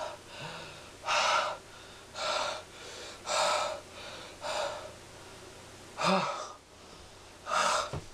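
A man gasping for breath: six loud, ragged gasps about a second apart, with a longer gap before the last two.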